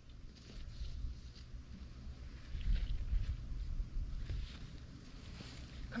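Wind buffeting the microphone, a gusty low rumble, with faint soft rustles of a T-shirt being smoothed flat by gloved hands.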